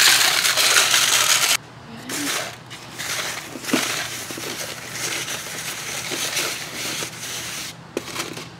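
Gritty Turface and pumice granules pouring out of a glass bowl into a plastic plug tray, a dense rattling hiss that stops suddenly about one and a half seconds in. After it come quieter scattered rustles and ticks as fingers push the grit into the cells.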